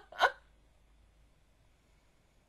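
The last short laughs of a fit of laughter, one or two quick voiced bursts in the first half-second.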